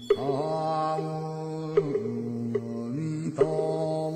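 A slow Buddhist mantra chant: long held vocal notes that glide up or down into each new pitch, with a few sharp clicks in between.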